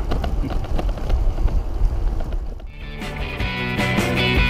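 Wind rumbling on the microphone of a camera carried on a moving bicycle, then rock music with guitar starts about three seconds in.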